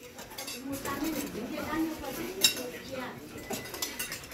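Cutlery and spoons clinking against bowls and plates at a crowded dinner table, over people's talk; one sharp clink about halfway through stands out as the loudest.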